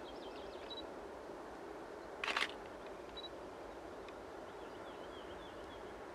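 Faint, steady rumble of a distant M62 diesel locomotive approaching with a freight train, with birds chirping. About two seconds in comes one short, sharp burst of noise, the loudest sound here.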